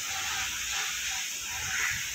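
Steady outdoor background noise: a hiss with a low rumble and faint distant voices, with no distinct event standing out.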